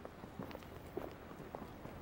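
Faint footsteps of several people walking on pavement: a few soft, irregular steps over quiet outdoor background.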